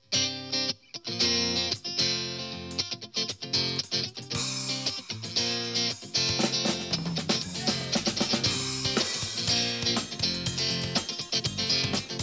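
Live band playing an instrumental intro on electric guitar, electric bass and drum kit, starting abruptly with the first chord.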